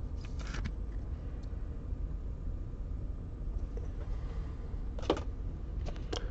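Trading card being handled in a clear rigid plastic toploader: a soft scrape under a second in and a sharper one about five seconds in, over a low steady hum.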